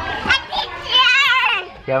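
A young girl's voice: a couple of short sounds, then one long, high-pitched, wavering squeal about a second in, with other children playing.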